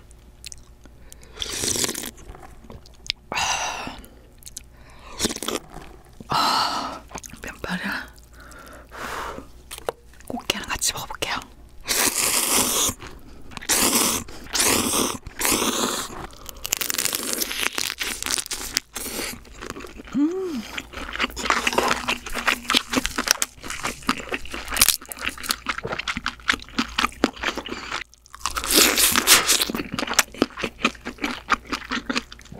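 Close-miked eating of crab ramyeon: repeated slurps of noodles, some about a second long, with wet chewing and mouth clicks between them.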